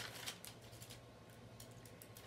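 Faint handling of paper notes: a sharp click at the very start, then scattered soft ticks and rustles over a low steady hum.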